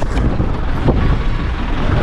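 Minivan on the move, heard from inside the cabin: steady engine and road rumble with wind buffeting the microphone through an open window.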